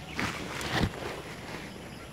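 Soft rustling of eggplant leaves and stems as a hand pushes in through the plant, with a low bump just under a second in.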